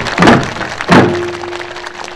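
Two strikes on Korean pungmul drums about two-thirds of a second apart. A steady tone rings on after the second strike and fades.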